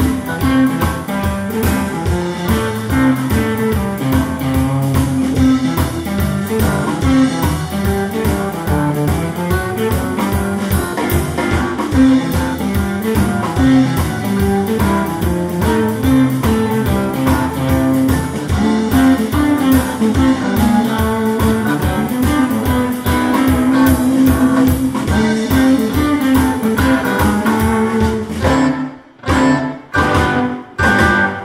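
Live blues band playing an instrumental stretch: electric guitars over bass and drums with a steady beat. The band breaks off briefly near the end, then comes back in.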